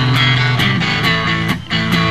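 Live rock band playing at full volume: strummed electric guitar and bass over drums, with cymbal strikes about every half second.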